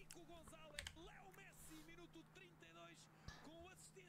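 Very faint football match commentary in Portuguese from the highlights playing at low volume, over a steady low hum, with a couple of small clicks.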